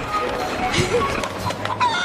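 Chickens squawking, with short cries about a second in and again near the end, over film score music and some clatter.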